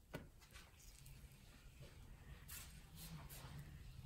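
Near silence: low room tone with a few faint, brief scrapes and taps of a wooden stick spreading epoxy resin over carbon fiber cloth.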